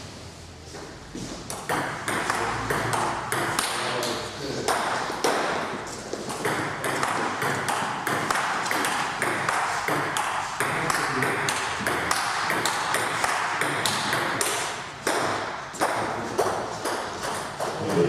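Table tennis rallies: the ball clicking in quick succession off the bats and the table, with the clicks ringing in a bare, echoing room.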